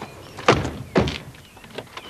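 Two car doors of a BMW 3 Series (E36) saloon slammed shut one after the other, about half a second apart, each a heavy thunk.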